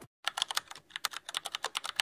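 Keyboard typing clicks: a rapid, even run of light clicks, about eight a second, starting a moment in.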